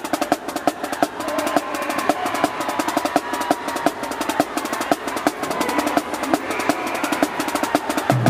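Marching drumline snare drums playing a fast, even run of light, sharp strokes, growing louder about a second in.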